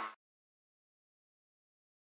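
Near silence: the in-car engine noise of the rally car fades out in the first instant, then dead silence.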